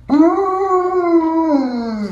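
Husky howling with its head thrown back: one long call that starts suddenly, holds level, then falls in pitch near the end.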